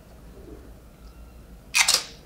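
Quiet room tone, then near the end one short, loud crunch as a tortilla chip loaded with salsa is bitten.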